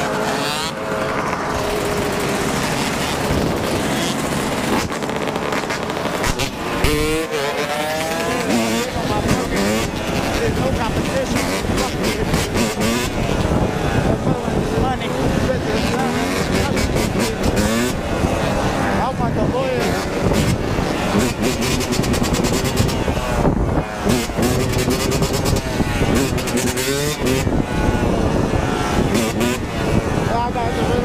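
Dirt bike engine revving up and falling back again and again while being ridden, with other dirt bikes running alongside.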